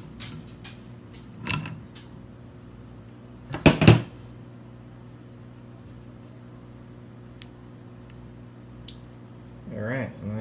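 Hand tool work on a metal CO2 regulator: a few light metal clicks, then a louder double clank a little before halfway as the adjustable wrench knocks against the fittings, followed by faint ticks of fingers turning a small fitting. A low steady hum runs underneath.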